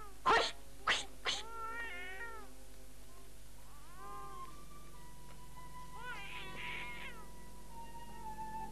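A woman shouts 'Hoș!', a shooing cry, three times in quick succession, followed by a few short, high, rising-and-falling cries. A single held musical note comes in during the second half.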